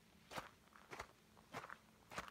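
Faint footsteps on dry, gravelly ground, about three steps at a slow walking pace.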